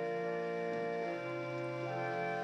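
Church organ playing slow sustained chords, moving to a new chord about a second in and again near the end.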